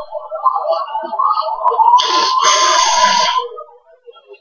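Soundtrack of a TV improv-comedy scene playing on a computer: performers' voices, then a loud, held, high vocal cry from about two seconds in, lasting about a second and a half.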